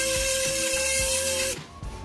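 Cordless orbital sander running steadily on a rough reclaimed-wood board, smoothing its fuzzy raw surface before waxing, then switched off about one and a half seconds in.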